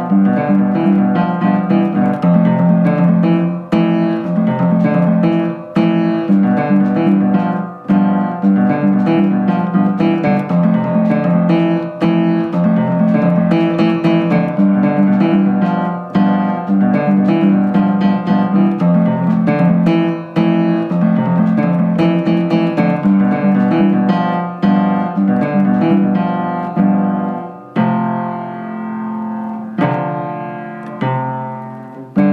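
Upright piano being played, its felt hammers striking the strings in a steady run of notes grouped in short phrases. Near the end a chord is held and rings down.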